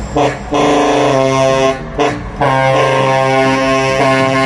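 Truck air horn blown in short blasts, then held in one long steady chord from a little past halfway, over the low running of the truck engines.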